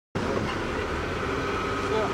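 A car running, a steady low rumble, with faint voices mixed in; it cuts in suddenly out of silence just after the start.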